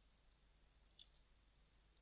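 Faint computer keyboard keystrokes: a few light key clicks, two of them clearer about a second in, against near silence.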